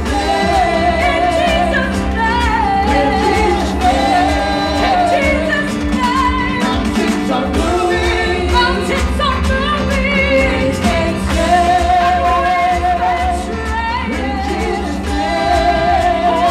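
A live church worship song: a group of women singing together into microphones over a keyboard and drum band, with vibrato on the held notes.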